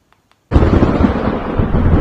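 After half a second of silence, a sudden loud, deep rumbling boom starts and carries on as a heavy, steady low rumble. It is a dramatic horror-style sound effect, thunder-like.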